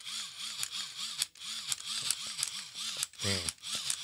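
Cordless drill pulsed on its trigger in a steady rhythm, the motor speeding up and winding down about three times a second. It is played as a makeshift beat to rap over.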